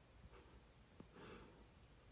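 Near silence: room tone, with faint rustling and a soft click about a second in.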